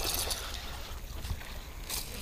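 Splash of a largemouth bass striking a Whopper Plopper topwater lure on the pond surface, heard at a distance in the first half second, followed by faint water noise as the fish is fought.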